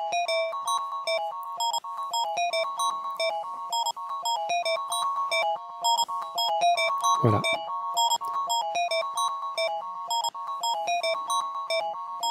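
A rhythmic pattern of short pitched synth-keyboard notes, sliced from an audio loop and re-sequenced, playing in a steady repeating rhythm.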